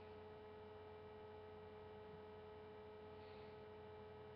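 Near silence with a faint steady hum.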